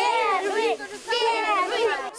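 A group of young children shouting a chant together in two loud phrases, the second starting about a second in.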